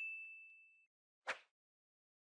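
Notification-bell chime sound effect: a single bright ding that fades out within about a second. A short burst of noise follows about a second later.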